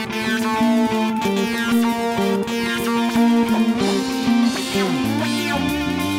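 Live band playing an instrumental passage: a repeating pattern of short pitched notes, with a heavier low part coming in about five seconds in.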